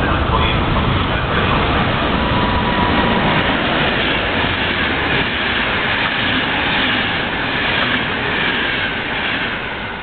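EuroCity passenger train hauled by a ČD class 371 electric locomotive, passing at about 160 km/h while braking. It makes a loud, steady rush of wheels and coaches that eases slightly near the end.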